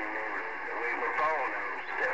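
A man's voice received over a Galaxy CB radio, coming through the speaker narrow and thin over a steady bed of static hiss. The received speech is indistinct.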